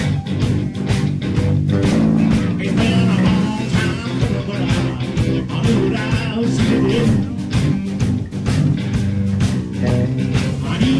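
Live blues-rock band playing: electric guitar, electric bass and a drum kit keeping a steady beat.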